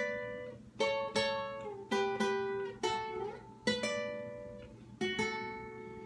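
Twelve-string acoustic guitar (docerola) picked slowly note by note in a requinto lead run in D, the notes mostly coming in pairs about a quarter second apart, each ringing out and fading before the next pair.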